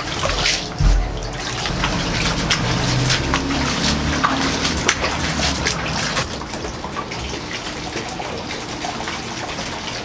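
Water poured from a plastic jug, splashing steadily into the water-filled cardboard maze, with a low thump about a second in.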